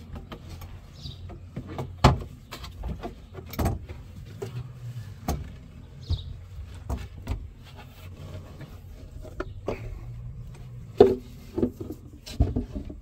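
Plastic quick-release latches clicking open and a carpeted boat wall panel knocking and bumping as it is worked loose and lifted out, with several sharp knocks, the loudest near the end.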